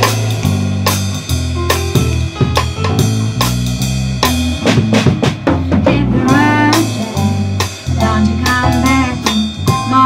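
A live band playing an instrumental passage, led by a drum kit with rimshots and bass drum over a stepping electric bass line. About six seconds in, a higher melodic line with sliding, bending notes joins in.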